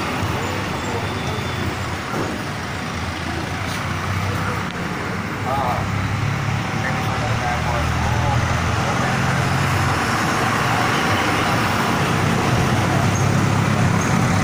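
Steady road traffic noise, with vehicle engines running throughout.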